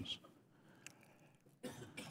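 Near silence in a hearing room, then near the end a man briefly and quietly clearing his throat just before answering.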